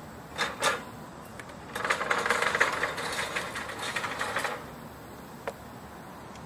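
A cordless drill driving the Crawler scaffold mover's gear-reduction drive. The trigger is blipped twice briefly, then the drill runs for about three seconds with a dense, rapid mechanical rattle, followed by a single click near the end.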